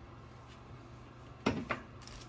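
A quiet drink from an aluminium beer can, then two short knocks about a fifth of a second apart near the end, as the can is set down on a counter.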